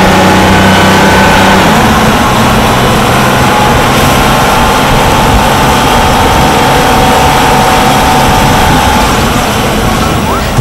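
Car engine sound effect, running steadily. Its low hum is strongest for the first two seconds or so.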